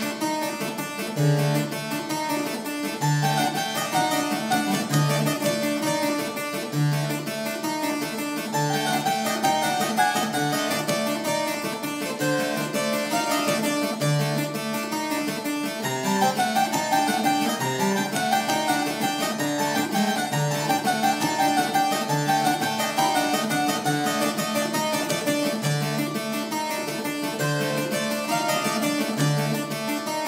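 Italian one-manual harpsichord built by Lorenzo Bizzi, played solo: a dance piece with a low bass note recurring about every two seconds under busier notes above.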